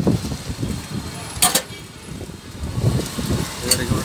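Outdoor ambience of traffic rumble and indistinct voices, with two short sharp clicks about a second and a half in and near the end.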